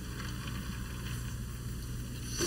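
Steady low hum with a faint even hiss underneath.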